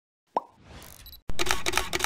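Logo-animation sound effect: a short pop, a rising whoosh, then a fast run of sharp clicks about six a second.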